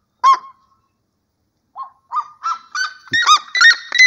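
Red-legged seriema calling. One loud yelp comes just after the start, then after a pause a series of yelps that climb in pitch and come faster and faster toward the end.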